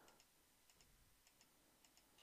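Near silence, with a few faint, irregular computer mouse clicks.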